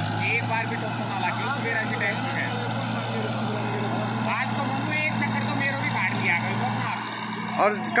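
Tractor diesel engine held at high, steady revs under load as it strains to pull free of soft soil, easing off slightly near the end. Distant voices call out over it.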